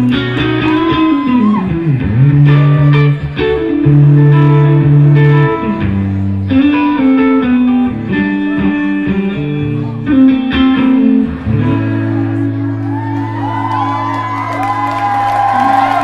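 Live band playing a blues jam, guitar over bass and drums, heard on an audience recording. About twelve seconds in the band settles on a long held chord while the guitar plays bent, sliding notes over it, winding the jam down.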